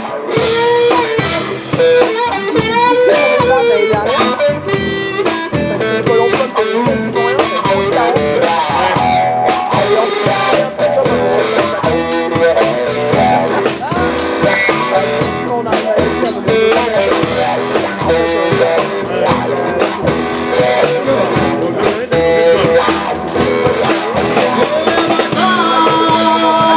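Live blues played by an electric trio with no vocals. A Paul Reed Smith McCarty electric guitar, run through a wah pedal into a Koch Studiotone amplifier, plays bending lead lines over upright double bass and a drum kit.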